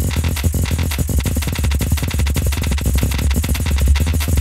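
Granular synthesis in Logic Pro's Alchemy: a percussive sample chopped into tiny grains and looped forwards and backwards, giving a dense, rapid, fluctuating stream of short hits over a steady low bass.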